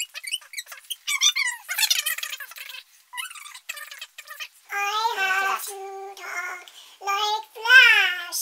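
A woman's voice played back fast-forwarded: sped-up, high-pitched chatter in quick, broken fragments.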